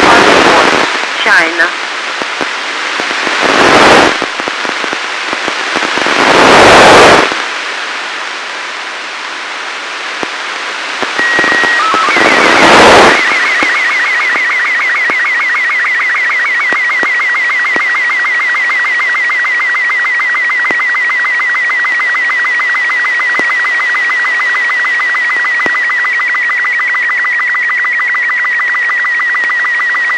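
Amateur-radio satellite downlink from ARISSAT-1: the opening seconds hold loud surges of radio hiss and static, with a short steady tone near eleven seconds. From about thirteen seconds a Robot 36 slow-scan TV picture signal takes over: a steady high whistle, chopped by rapid even ticks of the line sync pulses, carrying an image that the software is decoding.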